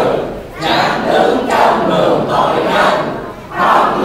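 A congregation reading scripture aloud in unison in Vietnamese, many voices together, with two short pauses between phrases: one about half a second in and one near the end.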